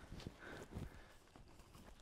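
Near silence, with a few faint soft knocks and scuffs in the first second.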